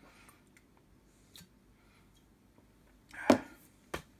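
A few faint clicks, then about three seconds in a bottle set down on the workbench with a solid knock, followed by a short sharp click near the end.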